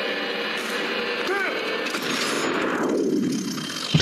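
Action-film soundtrack: a dense, steady mix of sound effects and score, with a brief pitched sweep about a second and a half in, thinning out in the last second.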